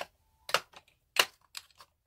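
Small makeup containers clicking and clacking as they are picked up and set down on a hard surface while being cleared away: four sharp knocks, the loudest a little past the middle.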